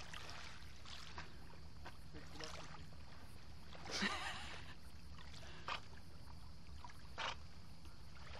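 A boxer dog swimming in calm sea, with light water sloshing and one louder splash about four seconds in as the dog reaches the man in the water.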